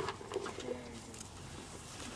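A bird's low cooing call, a few short soft notes in the first second, with a few light knocks.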